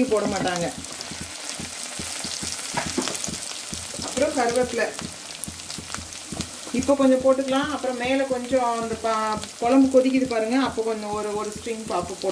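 Chopped garlic and curry leaves frying in hot oil in an earthenware pot: a steady sizzle with many small crackling spatters. A woman's voice is heard over it briefly near the start, at about four seconds, and through most of the second half.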